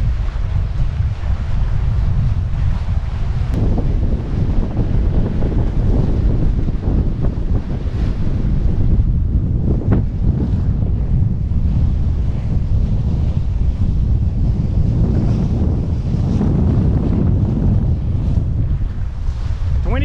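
Wind buffeting the microphone over the rush of water along the hulls of an F-27 trimaran sailing at about eight knots; a loud, steady rumble with no engine running.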